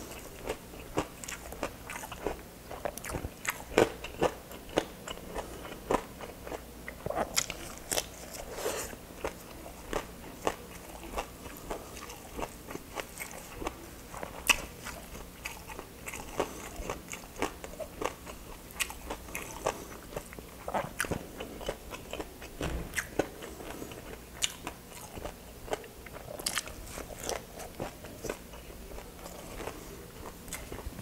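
A person chewing crispy fried pork hock, with an irregular run of crunches and crackles as the crisp skin breaks between the teeth.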